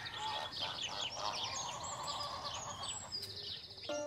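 Birds chirping and twittering in a rapid, busy chorus, a farmyard-style sound effect.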